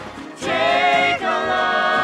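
Six voices singing together in harmony. After a soft moment, a chord comes in about half a second in and is held, then the voices move to a second sustained chord.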